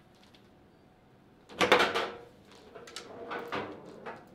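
Foosball ball shot into the goal of a table soccer table, striking with one loud bang about one and a half seconds in. A few lighter knocks follow a second or so later.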